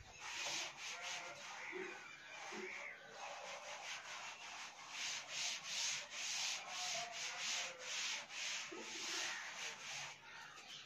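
Cloth duster wiping chalk off a blackboard in repeated rubbing strokes, about one or two a second.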